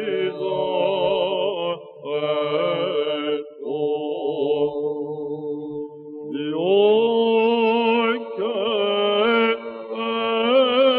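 Byzantine chant in plagal fourth mode: a male cantor sings a melismatic, ornamented line over a steady held drone (ison). The phrases are broken by short pauses, and a rising glide opens a new phrase about six seconds in.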